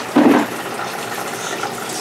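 Steady rushing of water from a large reef aquarium's circulation and filtration system, with a brief loud sound about a quarter second in.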